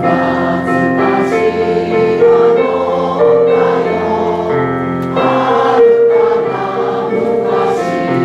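A group of voices singing a song together in chorus, holding long notes that change every second or so.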